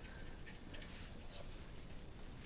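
Faint ticking and light clicks of a wrench working a nut on the exhaust oxygen sensor's flange.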